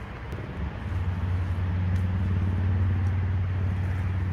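A motor vehicle engine running nearby: a steady low hum that grows louder about a second in and holds. A couple of faint clicks from pruning shears snipping pepper stems.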